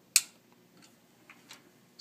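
The power switch on a lab AC power supply clicks once as it is switched on, followed by a few faint ticks.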